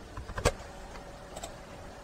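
A few short, sharp computer mouse clicks, the loudest about half a second in and fainter ticks later, over a faint steady hiss.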